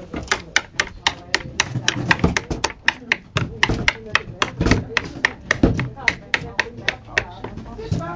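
Knocking and tapping on a hollow plastic toy playhouse: a string of sharp, uneven taps, about three or four a second, with a few heavier thumps among them.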